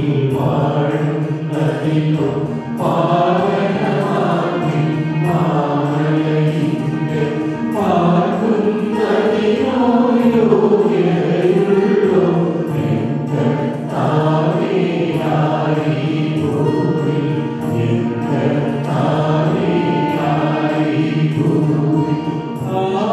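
Syro-Malabar liturgical chant: voices singing the ordination prayers in a slow, continuous melodic line without pause.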